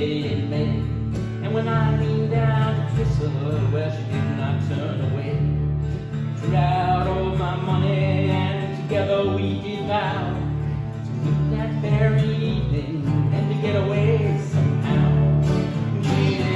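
Acoustic and electric guitars playing an instrumental break in a country-style song, with a steady low bass line under a shifting plucked melody.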